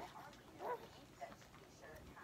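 A baby's faint, short coos: one right at the start and another a little under a second in.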